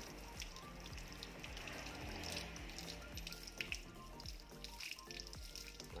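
A stream of water running from a hose and splashing over a spinning fishing reel as it is rinsed, with background music playing over it.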